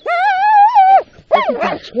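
Sled dog whining: one long, high, wavering cry lasting about a second, then a shorter cry that falls in pitch.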